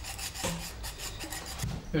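Quick repeated scraping strokes of a kitchen utensil against cookware, fairly quiet.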